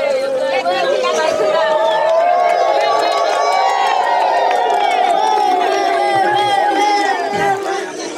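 A crowd of voices, many of them women's, singing out together in long, overlapping held notes. They swell toward the middle and ease off near the end.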